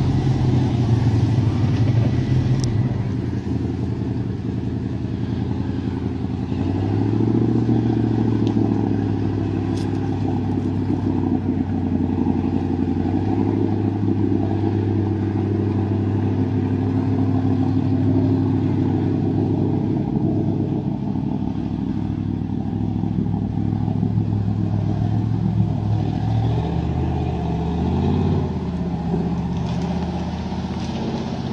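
A 4x4's engine running under load as it wades through deep water, its revs rising and falling a few times. It keeps running though the vehicle is in water nearly up to its body.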